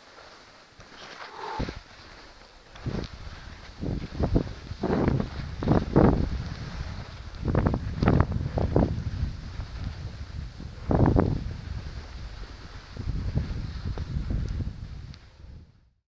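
Wind buffeting the microphone of a skier's camera during a downhill run, coming in uneven gusts, with skis sliding on snow underneath; it fades out near the end.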